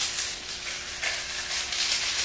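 Paper magic coil rustling as it is pulled out of a closed fist, in a few short hissing spurts.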